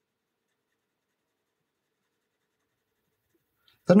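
Near silence, then a woman's voice starts right at the end.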